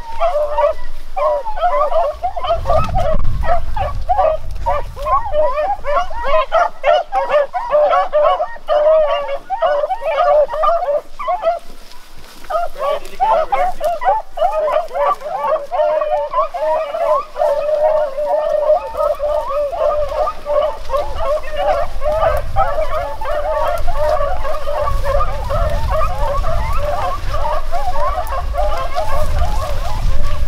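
A pack of beagles baying on a rabbit track: many overlapping calls that keep on steadily, thinning briefly about twelve seconds in. A low rumble runs under the later part.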